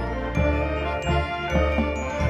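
Marching band field-show music: sustained chords with bell-like ringing mallet percussion on top and low notes pulsing underneath.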